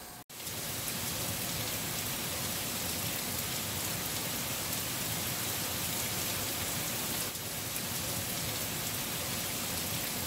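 Heavy rain falling steadily in a downpour, a dense, even wash of sound with no letup.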